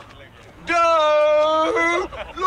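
A voice drawing out one long call at a steady pitch, starting about two-thirds of a second in.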